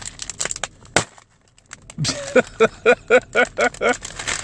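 Crinkling plastic snack bag squeezed until it bursts with a sharp pop about a second in, the bag puffed up with air after freezing. A man laughs in rhythmic bursts through the second half.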